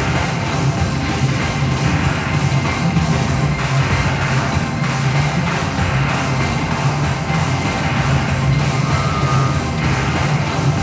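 Live experimental electronic music played from laptops and controllers: a dense, unbroken wash of sound over a strong, sustained low bass.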